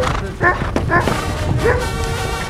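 Hounds giving tongue: four short yelping cries in under two seconds, over background music.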